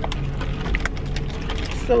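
Scattered light clicks and knocks of takeout items being handled and set down inside a car, over a steady low rumble.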